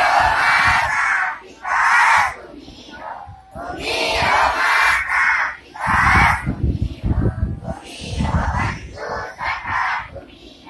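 A large group of schoolchildren chanting in unison, in loud phrases of a second or two with short pauses between them, as in a recited prayer.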